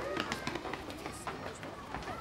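Children's footsteps, a quick patter of light footfalls running up outdoor brick steps, with children's voices in the background.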